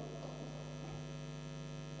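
Steady low electrical hum from the lecture's sound system, with nothing else over it.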